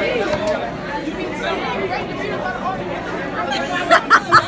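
Steady chatter of many students talking at once in a crowded school cafeteria, with no single voice standing out.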